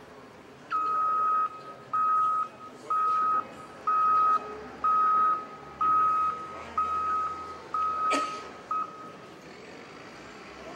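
Vehicle reversing alarm beeping at one steady pitch about once a second, nine beeps in all, with a single sharp knock near the end.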